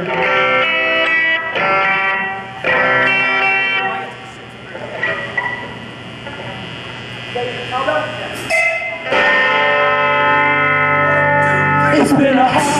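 Electric guitars playing chords through the stage amplifiers: two ringing chords in the first four seconds, then a quieter stretch with a few scattered notes, then a loud held chord from about nine seconds in.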